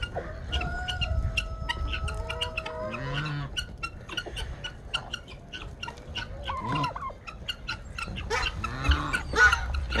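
Turkeys and chickens of a mixed flock calling: short clucks run throughout, a long held call sounds in the first few seconds, and a louder burst of calls comes near the end.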